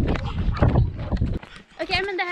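Wind rumbling on the microphone with rhythmic thumps of running footsteps. It cuts off about a second and a half in, and a voice starts near the end.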